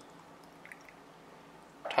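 Faint trickle of pickle juice poured from a glass measuring cup into a shot glass of chopped pickles, with a small drip or splash a little under a second in.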